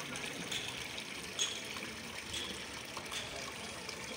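Water pouring from a carved stone spout and trickling steadily into a stone channel below.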